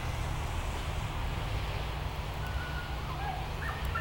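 Steady low background rumble with a faint even hiss; no distinct sound stands out.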